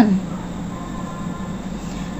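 A steady low hum of background noise with a faint thin high tone running through it, at the tail of a spoken word.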